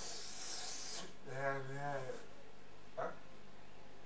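A breathy rush of air for about a second, then a man's drawn-out wordless vocal sound lasting about a second, and a short click about three seconds in.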